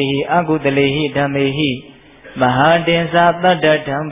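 A Buddhist monk's voice chanting in a steady, level pitch: two phrases with a short break about two seconds in.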